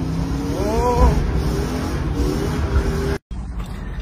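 Drift car's engine revving hard inside a stripped, roll-caged cabin during a handbrake-started slide, its pitch climbing and falling about a second in over a heavy low rumble. It cuts off abruptly near the end.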